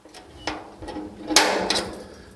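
Centre punch snapping against a sheet-steel floor panel: a run of short, sharp metallic clicks, the loudest a little past halfway, as the centres of spot welds are marked so the drill bit will not wander.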